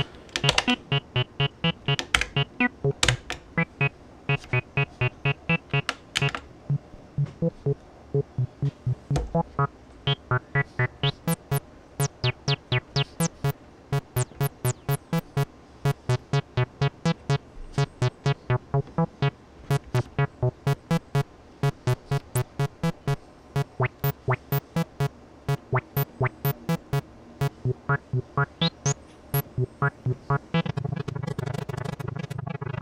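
Abstrakt Instruments Avalon Bassline, an analog TB-303 clone, playing a looping sequenced acid bass pattern of short notes, about four a second. As its filter and envelope knobs are turned, the notes grow brighter and duller in sweeps.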